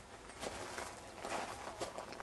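Footsteps of a person walking on dry ground, about four uneven steps.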